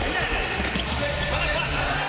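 A futsal ball thudding as it is kicked and bounces on an indoor court floor, over music and voices.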